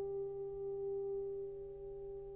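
A single piano note left ringing and slowly fading, with no new note struck.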